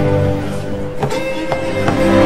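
Live orchestral music with violins playing sustained, held notes, and a few short sharp strokes about a second in and again near the end.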